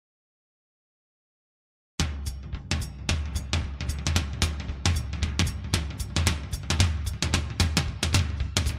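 Silence, then about two seconds in a recorded drum-kit beat starts abruptly: bass drum, snare and hi-hat in a busy, steady groove, the opening of the dance routine's music track.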